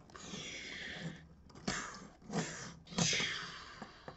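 A person's breathy hissing exhalations through mouth and nose: two longer breaths, each fading out, with short puffs between them.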